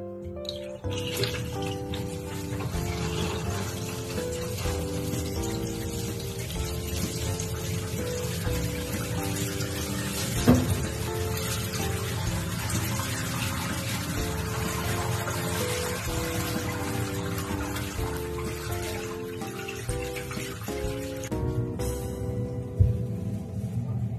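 Tap water running steadily into a bathtub as it fills, under background music of stepped melodic notes. There is a single sharp knock about halfway through.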